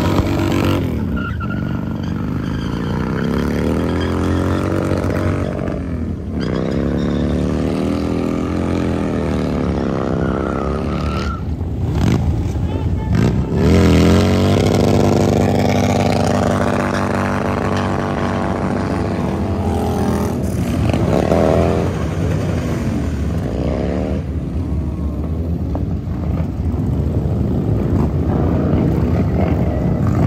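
Motorcycle engines revving hard over and over during street burnouts, the pitch sweeping up and down in long swells, loudest in the middle of the stretch.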